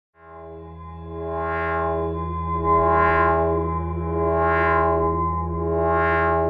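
Synthesizer intro music: a sustained chord over a deep bass note, fading in over the first two seconds, its brightness swelling and ebbing about every second and a half.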